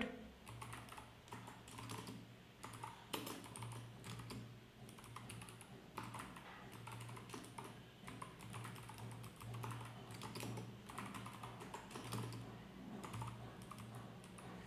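Typing on a computer keyboard: quiet, irregular keystrokes in short runs with brief pauses.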